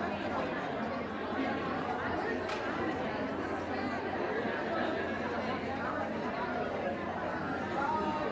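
Crowd chatter: many overlapping voices at a steady level, heard across a large hall.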